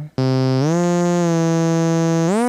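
Native Instruments Massive software synthesizer playing a held note in monophonic mode that slides up smoothly to a higher held note with portamento glide, set to a short glide time.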